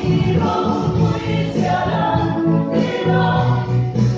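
A mixed choir of women's and men's voices singing a hymn in harmony, with sustained notes that move from chord to chord without a break.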